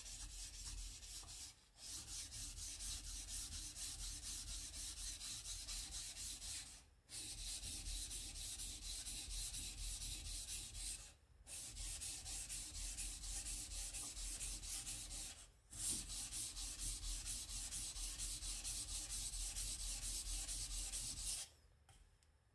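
A left-handed Ginsan stainless steel kitchen knife being stroked back and forth on a Shapton Kuromaku whetstone: a quick, even rhythm of scraping sharpening strokes, broken by four short pauses and stopping just before the end.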